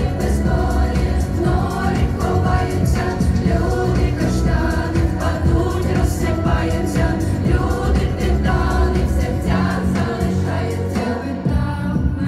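A group of teenage school students, boys and girls, singing a song together into microphones over accompanying music.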